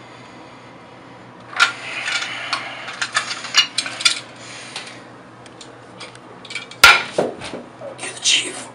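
Irregular clattering and sharp clicks of small hard objects being handled for a couple of seconds, then scattered lighter clicks and a single loud sharp knock near the end.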